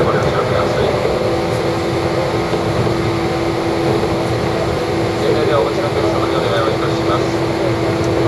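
Running noise heard inside the cabin of a JR East 185 series electric train under way: a steady rumble with a constant hum.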